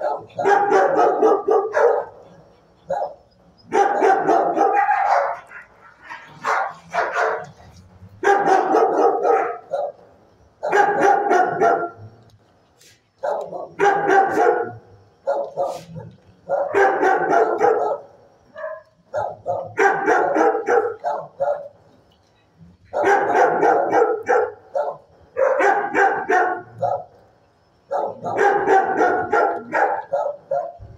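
Dog barking in repeated bouts: a cluster of loud barks every two to three seconds, with short pauses between.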